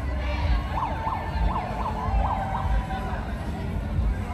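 A siren yelping, its pitch swinging rapidly up and down about three times a second for roughly two seconds, starting about a second in.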